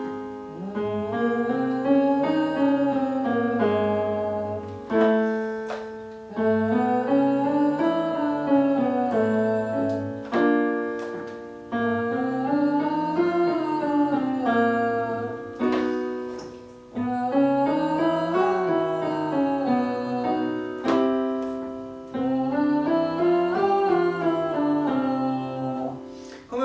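A man and a woman singing a five-note up-and-down vocal warm-up on "O" into ventilation masks, accompanied by an electric keyboard that strikes each starting note. The pattern comes five times, about five seconds apart, each round a semitone higher.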